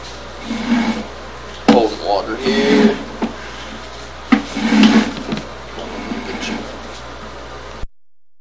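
Indistinct voices with three sharp knocks, the loudest about a second and a half in. The sound cuts out abruptly just before the end.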